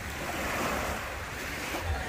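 Small lake waves breaking and washing up a sandy beach, a steady wash that swells about half a second in, with wind rumbling on the microphone.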